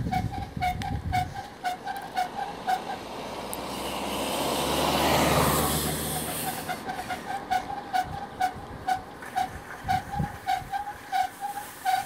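A vehicle passes, its rushing noise swelling to a peak about halfway through and then fading. Under it a bicycle keeps up a steady light ticking, about three to four ticks a second.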